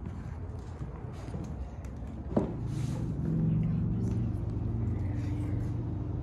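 A sharp click a little over two seconds in, then a low, steady hum made of several held tones that carries on.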